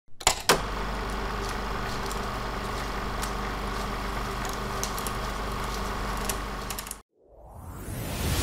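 Old-film sound effect: a steady hiss and low hum sprinkled with crackles and pops, opening with two sharp clicks and cutting off suddenly about seven seconds in. A rising swell starts near the end.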